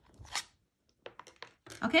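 A short papery rustle, then a few faint light ticks, from a watercolor card being handled on a cutting mat.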